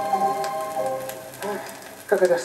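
Theatre orchestra music played from a vinyl record on a valve radiogram, with held notes over the record's surface crackle and hiss. The music grows quieter through the second half and dies away near the end.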